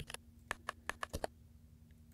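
Computer keyboard keystrokes: a quick, uneven run of about nine key clicks in the first second or so, then a pause, as a search is entered and the highlighted result is stepped through the list in a terminal prompt.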